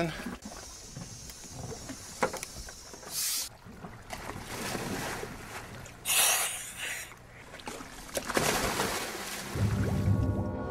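Boat-deck and water noise as divers get into the sea: several short bursts of rushing, splashing noise over a steady background. Music begins just before the end.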